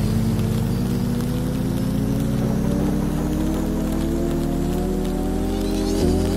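A motor vehicle engine running with its pitch rising slowly and steadily as it gains speed, over a steady hiss of rain on a wet road.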